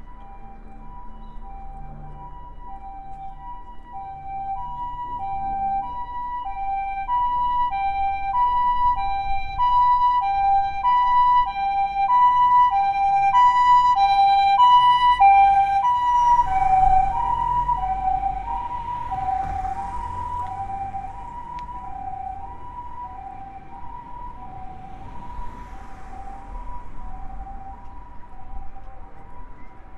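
Japanese ambulance's two-tone hi-lo siren, the two notes alternating steadily as it comes closer and grows louder. It is loudest about fifteen seconds in, then drops slightly in pitch as it passes, with the rush of the vehicle going by, and fades away.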